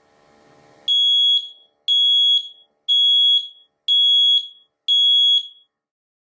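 Ventis Pro4 multi-gas monitor beeping five times, about once a second, as its power button is held down: the countdown to shutting off. Each beep is a loud, high steady tone ending in a short chirp.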